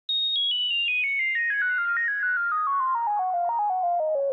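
Cherry Audio Octave Cat software synthesizer with its 24 dB low-pass filter self-oscillating, giving a pure, sine-like tone. It plays a fast run of notes, about eight a second, falling from very high to low with small turns back up along the way.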